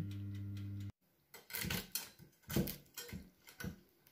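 A steady electric oven hum for about the first second, cut off abruptly. Then a few short, irregular clinks and scrapes of a metal spatula against a glass baking dish as the dish is handled.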